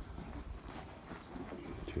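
Faint outdoor background with a low rumble and a few soft steps as a person walks along a wall carrying the camera.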